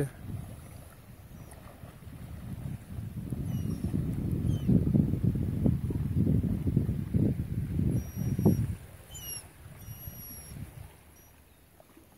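Water sloshing and splashing as a horse wades through shallow sea water, swelling in the middle and dying away a few seconds before the end.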